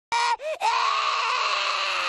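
A cartoon boy screaming in pain from a throwing star lodged in his eye: a short high cry, a brief cry that rises and falls, then one long held scream from just over half a second in.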